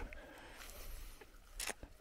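Faint, steady outdoor background noise with a low rumble, and one short hissing noise near the end.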